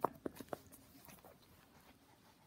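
Small dog playing with a plush toy: a quick run of four or five short, sharp mouth sounds in the first half second, then quieter.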